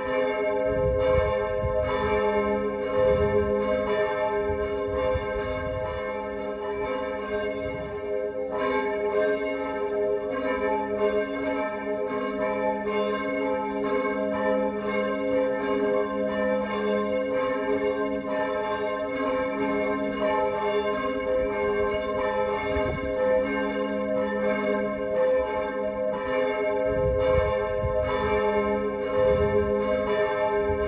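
Church bells ringing, strikes following one another in quick succession over a continuous overlapping hum of the bells.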